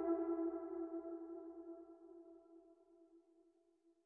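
The last held note of a bansuri (bamboo flute) ringing out and fading away over about two seconds at the end of an exercise, followed by near silence.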